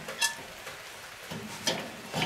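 Cast iron Dutch oven being set on a metal grill grate over hot charcoal: two light clicks of iron on the grate, about a quarter second in and near the end, over a faint steady hiss.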